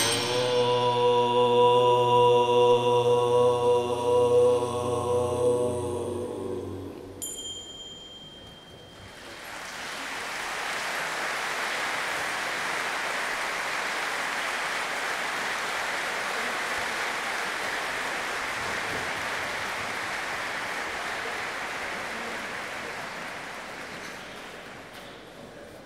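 A deep chanted drone with strong steady overtones, held for about seven seconds and fading out, with a small bell ringing briefly as it ends. Then a steady rush of audience applause from about ten seconds in.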